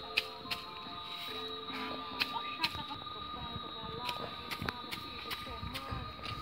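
Irregular sharp clicks and crackles, several a second, as hot roasted cashew nuts are stirred and swept across bare ground with a stick and a straw broom. Faint voices are in the background.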